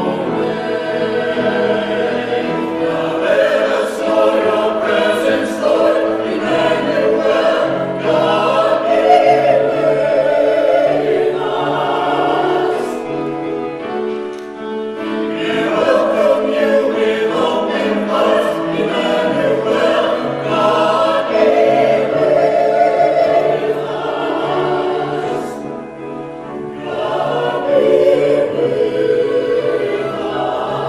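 A small mixed choir of men and women singing a hymn together in harmony, phrase after phrase, with brief breaks between phrases.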